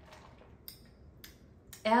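A sip from an iced coffee drink in a lidded plastic cup, quiet apart from three or four small sharp clicks as the cup is handled and lowered; a woman's voice starts near the end.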